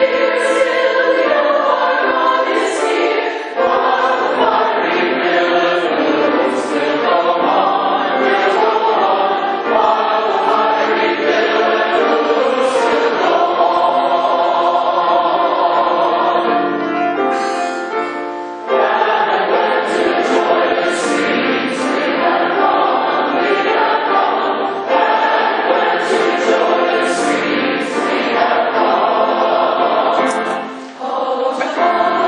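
A large mixed choir singing a four-part (SATB) hymn arrangement, accompanied on grand piano. There is a brief break between phrases a little past halfway.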